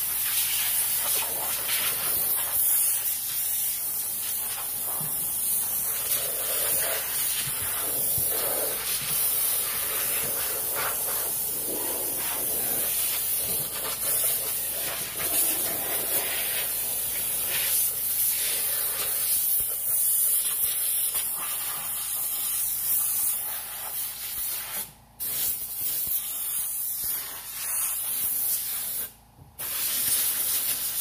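Steam hissing steadily from a McCulloch 1385 canister steamer's nozzle as it is jetted onto a truck's plastic door panel, cutting out briefly twice near the end.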